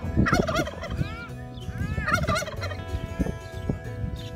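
Poultry calling: short runs of warbling calls that rise and fall in pitch, about three times, with a couple of light knocks near the end.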